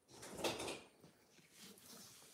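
Cat's fur rubbing against the phone's microphone: a brief rustling burst about half a second in, then faint rustling.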